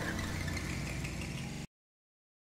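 A steady low hum or rumble, the background sound bed that ran under the narration, which cuts off suddenly into total silence near the end.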